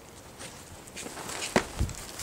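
Hooves of a miniature Jersey heifer stepping and shuffling on wood-chip bedding as she shifts around, starting about half a second in, with a sharp knock about a second and a half in.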